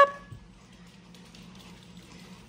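Quiet room with a steady low hum and a few faint light ticks, after a woman's spoken call to a dog cuts off at the very start.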